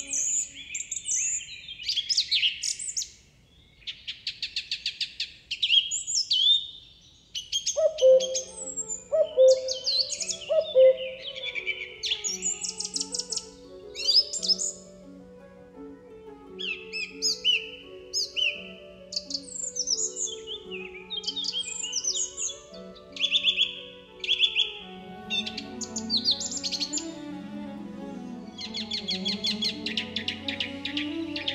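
Many birds chirping and trilling in quick, dense phrases, over soft music with long held notes that comes in about eight seconds in.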